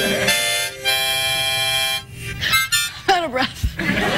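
Two harmonicas blown together in held chords, stopping and restarting a couple of times. In the second half the sound breaks into shorter, wavering notes.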